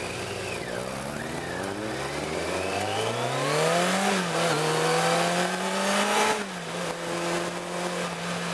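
Car engine heard from inside the cabin, pulling away and accelerating: its note climbs for about four seconds, drops as it changes up a gear, climbs again and drops once more with a second upshift about six and a half seconds in, then runs steadily.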